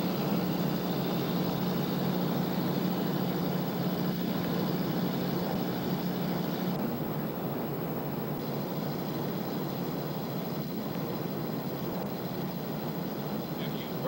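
A steady, engine-like drone with a low hum under it. The hum and part of the hiss drop away about seven seconds in, leaving a plainer rushing drone.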